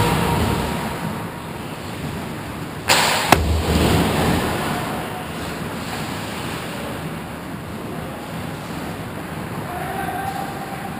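Ice hockey play at the goal: a brief, bright scrape of skate blades on ice about three seconds in, ended by a sharp crack, over the steady hiss of skating on the rink. A dull thump comes right at the start.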